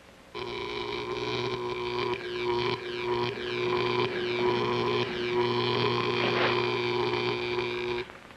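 A loud, steady buzzing drone made of several held tones, with a sweeping, wavering shimmer above it, that switches on abruptly just after the start and cuts off sharply at the end.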